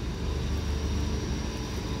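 Steady low mechanical hum with a faint, steady high-pitched tone above it.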